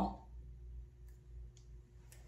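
Quiet room tone: a low steady hum with two faint clicks, about a second in and again half a second later.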